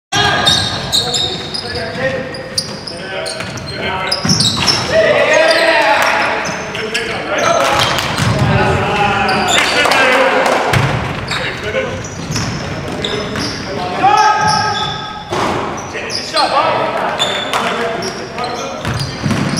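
Basketball game sounds in an echoing gym: a ball bouncing on the hardwood floor, sneakers squeaking in short bursts, and players calling out.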